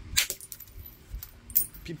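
Two sharp, high clinks of knapped stone being handled, a louder one near the start and a second about a second and a half later. The piece is heat-treated Mississippi gravel.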